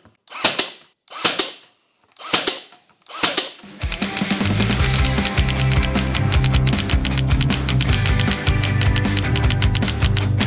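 Ryobi HP 18V cordless brad nailer firing four times, about a second apart, each shot a sharp bang driving a brad into the board. About four seconds in, music with a steady beat starts and covers the rest.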